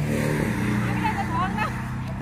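A steady low engine hum, as of a vehicle running at idle, with voices over it.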